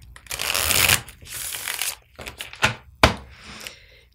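A deck of oracle cards shuffled by hand: two rustling runs in the first two seconds, then a few sharp taps of the cards.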